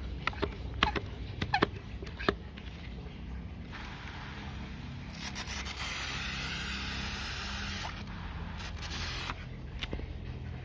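Handheld pump pressure sprayer: a few clicks and knocks of handling, then about four seconds in the nozzle sprays a fine mist with a steady hiss for about five seconds, stopping shortly before the end.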